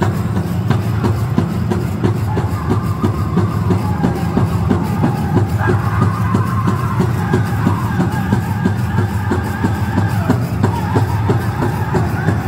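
Powwow drum group playing a jingle dance song: a large hand drum struck in a steady, even beat under high-pitched group singing that comes in a couple of seconds in.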